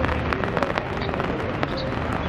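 Rain on a wet city street: a steady hiss with frequent sharp, irregular ticks of drops landing close by.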